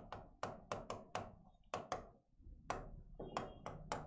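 Chalk tapping on a chalkboard as letters are written: a quick, irregular run of faint, short taps, roughly three or four a second.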